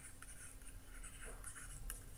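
Faint scratching of a stylus writing on a tablet, with a few light ticks of the pen tip.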